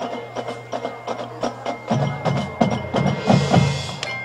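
A marching band's percussion playing: mallet instruments strike a quick run of notes, and low drum hits come in about two seconds in, growing louder.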